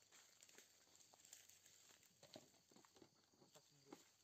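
Near silence, with faint scattered rustles and light clicks.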